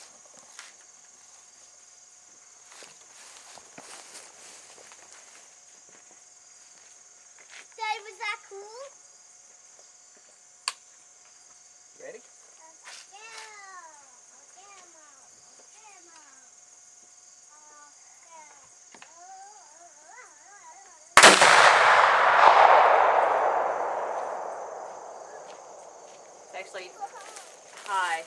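A single muzzleloading rifle shot, about 21 seconds in: one sudden, loud report followed by a long rumble that dies away over roughly five seconds. Before the shot there are only faint, scattered voices.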